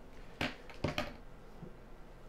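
Three light clicks and knocks of hard plastic being handled, the first about half a second in and two close together about a second in, as the RC boat's plastic base and shell are moved on a tabletop.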